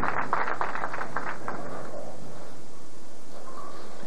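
Audience applauding a strike in a bowling centre, the clapping densest in the first second or so and then settling into a steady patter.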